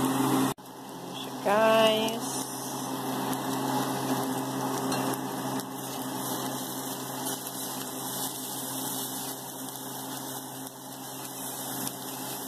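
Diced pork frying on a hot cast-iron sizzling plate, a steady sizzle as a spatula turns the meat. A brief voice sound about a second and a half in.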